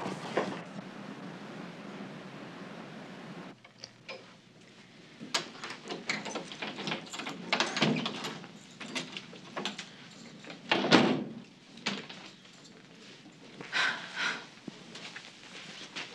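A steady background hiss for the first few seconds, then a door opening, with scattered knocks and footsteps as people come in. The door is shut about eleven seconds in, the loudest sound.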